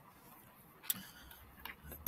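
A few faint, short clicks of a computer mouse being clicked.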